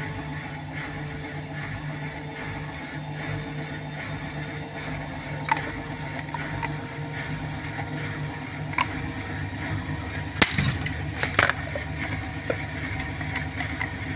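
Hotpoint Ariston front-loading washing machine on its spin cycle, the drum spinning fast with a steady motor hum. A few short knocks come through, the loudest about two-thirds of the way in.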